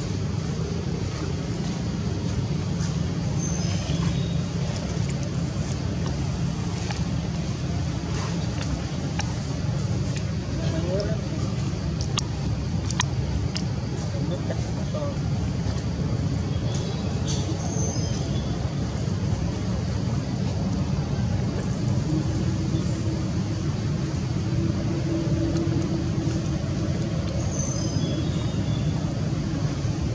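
Steady low background rumble like distant traffic, with indistinct voices mixed in. A few short high chirps come about three seconds in, near the middle and near the end.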